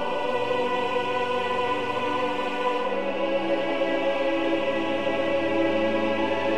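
Choir and orchestra holding long sustained chords in a slow choral hymn, moving to a new chord about halfway through.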